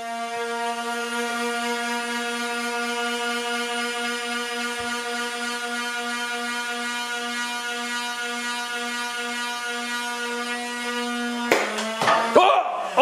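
Motorized Nerf Rival blaster's flywheels revved and held at a steady whine, cut off with a click near the end.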